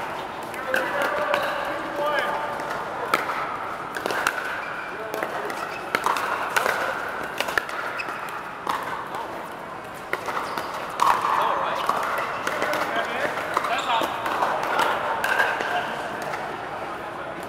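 Pickleball paddles striking the hollow plastic ball, a series of sharp pops at irregular intervals from the near court and other courts, over the murmur of many players' voices in a large air-supported dome.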